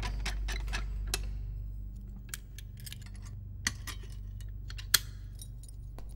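Keys and lock of a barred jail-cell door clicking in irregular sharp metallic ticks, the loudest about five seconds in, over a low steady hum.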